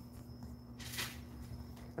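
A black leather handbag being handled, with one short rustling swish about a second in, over quiet room tone with a steady low electrical hum and a faint high whine.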